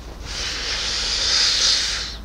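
A long hissing breath blown out close to the microphone, lasting nearly two seconds.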